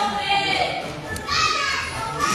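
Children in the crowd shouting and calling out, high-pitched voices carrying in a large hall.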